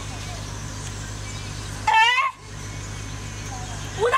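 A woman wailing in grief: one loud cry about two seconds in that rises and falls in pitch, over a steady low hum.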